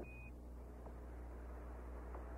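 A single short Quindar tone beep, about a quarter second long at the start, marking the end of Mission Control's radio transmission. A faint steady hiss and low hum from the air-to-ground radio link follows.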